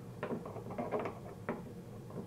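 Screwdriver working the small securing screws out of a car's engine undertray: a run of light, irregular clicks and scrapes.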